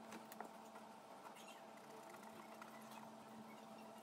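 Near silence with a faint steady hum, broken by a few faint squeaks and ticks from a paint marker's tip drawing on paper.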